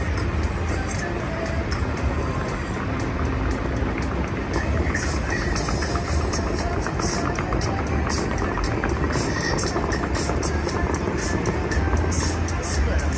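Music played over loudspeakers for a musical fountain show, with the rushing hiss of water jets spraying up and falling back.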